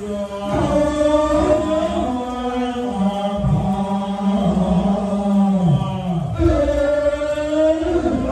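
Buddhist monks chanting Pali in unison for an amulet consecration rite, in long drawn-out held notes that glide slowly in pitch, with a short break about six seconds in before the next phrase.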